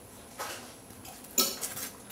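Kitchenware handled at a stove: a soft knock, then a sharper, louder clink of a utensil against a dish or pan about a second and a half in, with a few small ticks after it.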